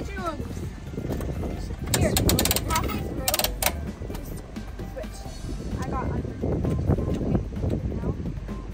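Coin-operated fish-food dispenser's metal crank being turned, its mechanism ratcheting in a run of clicks about two seconds in and another shorter run about a second later.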